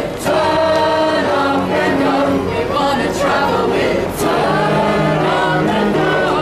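A group of people singing a song together without instruments, several voices holding and moving between notes continuously.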